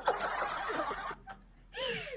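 Breathy, snickering laughter from people on a video call, heard through the call's narrow-band audio. It fades after about a second, and a short high voiced laugh comes near the end.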